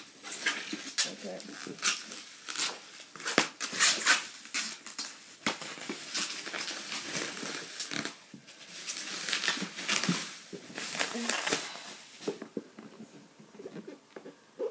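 A cardboard box and its packing being handled: irregular rustling and scraping with many sharp crinkles and taps.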